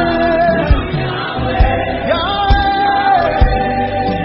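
Gospel worship song with band backing: a voice holds long notes and slides up into a new one about two seconds in, over a steady drum beat.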